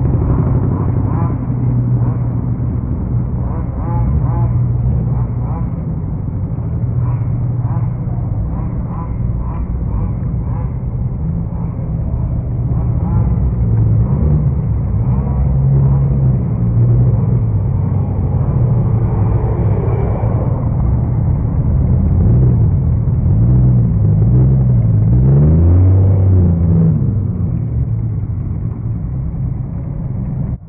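Engines of lifted 4x4 trucks and SUVs running in a slow parade line, a steady low engine note throughout, with voices mixed in. The engine pitch rises and falls a few times near the end.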